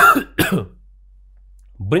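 A man coughing to clear his throat: two short, sharp coughs about half a second apart, the first the loudest.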